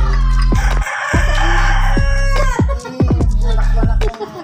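A rooster crowing, one long harsh call about a second in, over loud hip-hop music with a deep bass line and falling bass sweeps.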